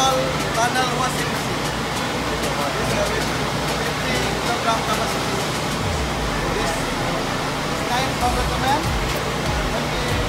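Industrial laundry machinery running: a loud, steady noise with a low hum. A man's voice talks over it and is mostly drowned out.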